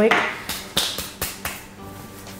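A quick run of short scratchy strokes and clicks, about four a second: nails being wiped clean with a cleanser pad before the top coat.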